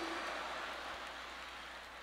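A large audience laughing and applauding: an even wash of crowd noise that slowly dies away.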